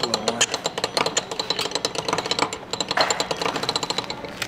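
Hand crank of a souvenir penny-pressing machine being turned, its gears giving a rapid, even run of clicks.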